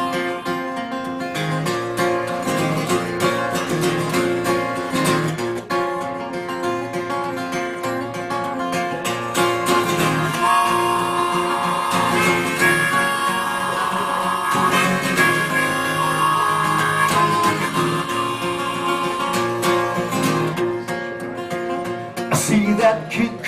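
Acoustic guitars strumming the instrumental introduction to a country song, with a steady rhythm and a held melody line over it.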